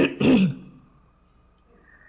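A person clearing their throat: a short harsh burst, then a second voiced one that falls in pitch. A faint click follows about a second and a half in.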